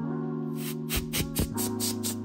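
Background music with held chords, over a run of about seven short hissing bursts from a can of compressed air blowing dirt out of the crevices of a wooden chest.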